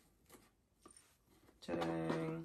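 Faint rustles of a satin ribbon being untied from a cardboard gift box, then near the end a man's voice holding one short steady hum-like note.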